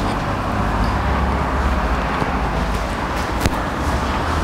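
Steady background noise with a low hum, with a brief click about three and a half seconds in.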